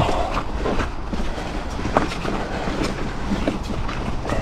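Mountain bike rolling fast over rocky trail: a steady low rumble of tyres on dirt and stone, broken by irregular knocks and rattles as the wheels strike rocks, the loudest right at the start and another about two seconds in.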